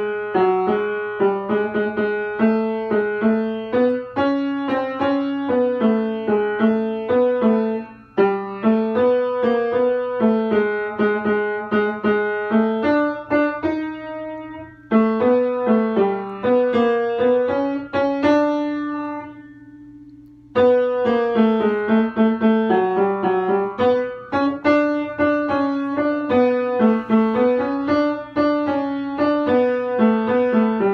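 Piano playing a choral accompaniment in repeated chords and short struck notes. Twice, a little past the middle and again about two-thirds of the way in, the playing stops and the last notes ring out and fade before it starts again.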